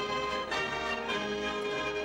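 A wind band of saxophones, clarinets and brass playing, holding sustained chords that shift a few times.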